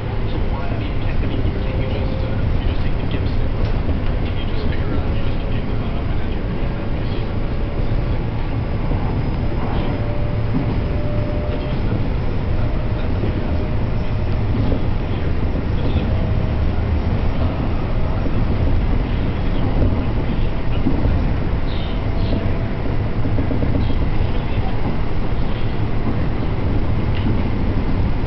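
Steady running noise of a moving train heard from inside the carriage: a constant low rumble with faint wavering tones above it.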